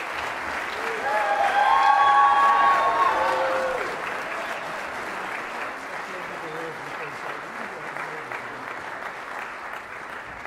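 Audience applauding at the end of a jazz big-band number, with a few voices cheering near the start. The applause swells to its loudest about two seconds in, then carries on steadily.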